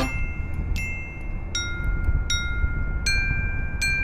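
Marching glockenspiel played alone: five single notes at a few different pitches, struck about once every three-quarters of a second starting about a second in, each note ringing on until the next.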